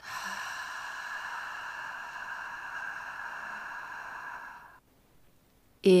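A woman breathing out slowly through her lips with a long, steady "fff" hiss, a controlled exhalation in a diaphragm breathing exercise. The hiss lasts nearly five seconds and stops abruptly; she says "in" near the end.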